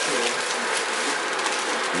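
A steady hiss with the faint voices of several people talking at once underneath.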